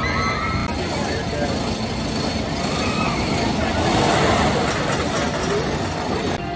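Wooden roller coaster train running along the track with a continuous rumble that swells about four seconds in, mixed with people's voices and yells.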